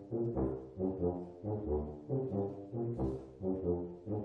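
Brass quintet accompaniment of tuba, trombone, horn and trumpet playing a short low figure that repeats again and again in a steady pulse, with the solo trumpet silent.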